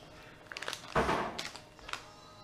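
Plastic packaging of a bag of soft-plastic craw baits crinkling as it is handled: a few small clicks, then a louder rustle about a second in lasting about half a second.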